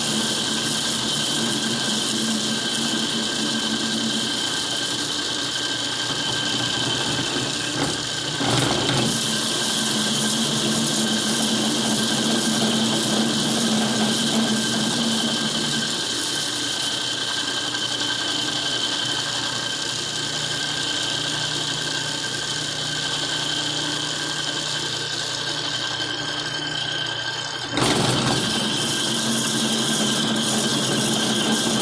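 Metal lathe turning a workpiece under a heavy cut: a steady machining whine with a high ringing tone running through it. It gets briefly louder and scrapier about eight seconds in and again near the end.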